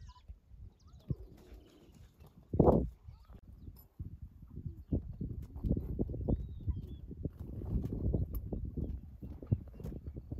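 A lioness gives one short, low call a little under three seconds in. It is followed by a continuous low rumbling with many short pulses.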